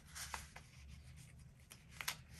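Faint rustling of a paper sticker sheet being handled and moved over planner pages, with a few soft ticks.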